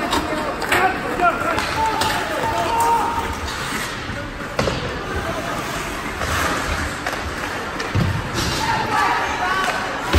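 Ice hockey game in a rink: spectators shouting over the play, with several sharp knocks and thuds of puck and sticks against the boards, one near the start, one about halfway and one about eight seconds in.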